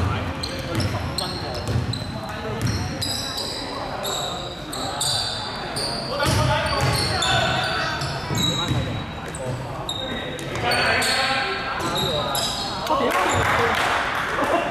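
Basketball dribbled on a hardwood gym floor in repeated thumps, with many short high sneaker squeaks and players calling out in a large echoing hall; the calls are loudest after about ten seconds and again near the end.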